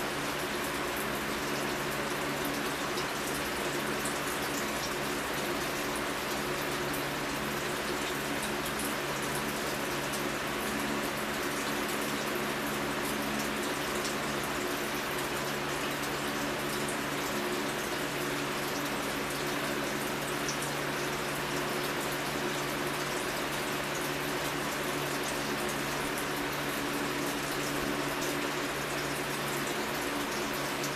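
Steady rushing noise with a low hum underneath, unchanging throughout.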